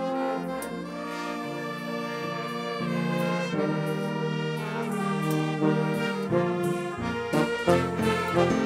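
Live band playing an instrumental with a brass-toned melody in held notes; drum hits come in about seven seconds in.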